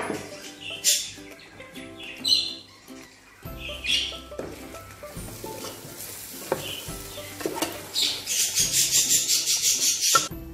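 Background music with a parrot's sharp calls a few times in the first half. Near the end comes a fast run of strokes, about five a second: a wooden spoon stirring and scraping in a large metal cooking pot.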